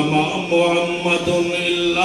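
A man's voice reciting in a melodic chant into a microphone, holding long, steady notes with short breaks between phrases.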